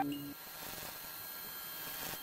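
The faint tail of the intro music dying away: a held note fades out in the first moments, leaving faint lingering tones over a low hiss.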